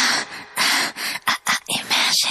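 A quick run of short, choppy noise bursts, about seven in two seconds and unevenly spaced, after the beat and bass of a pop track have dropped out. This is a stuttered sound-effect outro at the end of the song.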